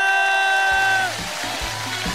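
Music: a held electronic chord that stops about a second in, as a rhythmic beat with a steady bass pulse starts up.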